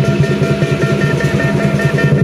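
Southern lion dance percussion, drum, cymbals and gong, playing a fast, steady beat of about six strokes a second, with the cymbals and gong ringing over it.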